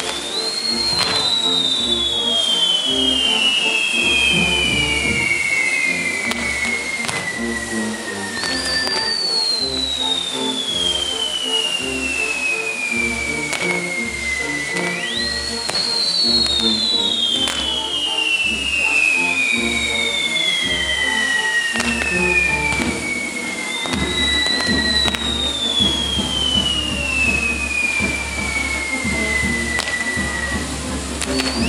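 Whistling fireworks on a spinning castillo wheel: about five long whistles, each starting high and sliding steadily down in pitch over some six seconds, with a few sharp pops. Music with a steady beat plays underneath.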